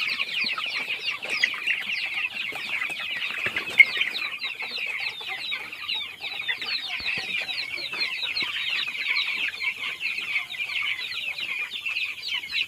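A shed full of young broiler chickens peeping continuously: many short, high, falling chirps overlapping into a steady chorus, with one louder chirp about four seconds in.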